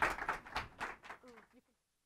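Audience applause from a small room thinning out and fading over about a second and a half, with a brief voice near the end before the sound cuts off.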